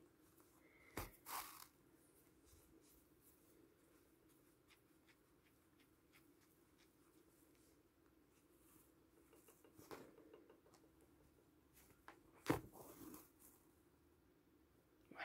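Near silence with a few faint, short rustles of fabric and thread being handled during hand embroidery, as a needle is worked through a fabric yo-yo; the loudest rustle comes near the end.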